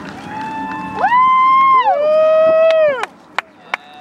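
Several spectators whooping with long, drawn-out "woo" cheers, voices overlapping, each call rising in pitch, held, then falling away. A few sharp clicks follow near the end.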